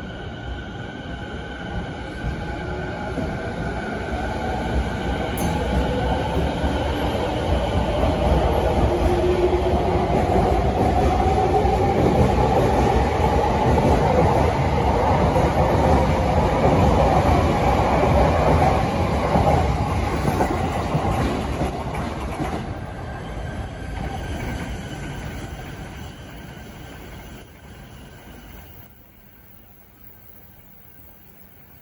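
TWR 70-000 series electric train pulling out of the station. Its motors whine, rising in pitch as it gathers speed, over the rumble of its wheels on the track. The sound grows loud as the cars pass, then fades away near the end.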